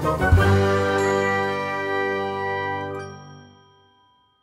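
Closing music sting: a chord of ringing, chime-like tones, struck again about a third of a second in, that rings on and fades out near the end.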